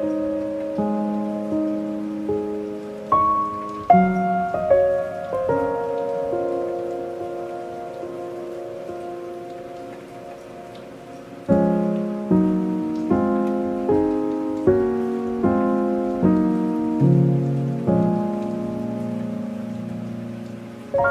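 Calm piano music over steady soft rain. Slow chords and held notes ring out and fade through the first half, growing quietest about ten seconds in, then a steady run of evenly spaced chords begins about halfway through.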